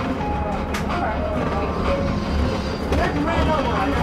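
Cabin sound of a Skywell NJL6859BEV9 battery-electric bus under way: a steady low road rumble from the running gear, with indistinct voices over it.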